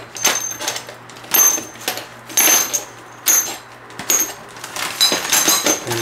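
Small metal baffle parts of a Thunderbeast Takedown 22 rimfire suppressor clinking against each other as they are handled and put into a plastic Ziploc bag. There is a string of separate bright, ringing clinks, with several in quick succession near the end.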